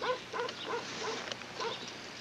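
A dog yipping: a run of short, high yelps, about three a second.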